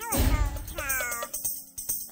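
Music: a song with a sliding, wavering sung line, opening with a deep bass hit.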